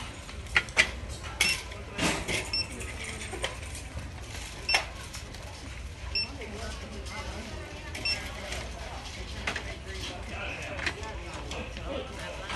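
Barcode scanner giving short high beeps as DVDs are scanned, four in all, amid clacks of plastic DVD cases being handled.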